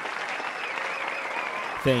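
Audience applause, an even clapping that runs on as a man starts to speak near the end.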